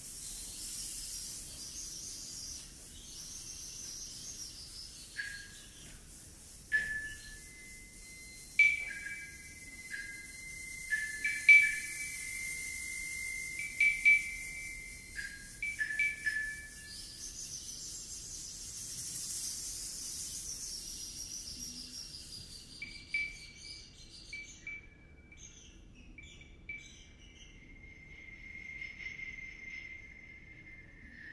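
Live contemporary percussion: high, bird-like chirps and short whistled tones from small hand-held instruments, sounded one at a time and in quick clusters, over a high rustling hiss that stops about two-thirds of the way through. Near the end a single whistle-like tone is held.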